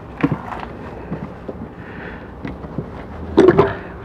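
Small plastic exterior compartment hatch on a motorhome being unlatched and opened by hand: a few light clicks and knocks, with louder handling noise shortly before the end.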